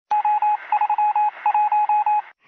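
Electronic beeps on one steady tone, short and long in three quick rhythmic runs, in the Morse-like style of a news channel's opening ident.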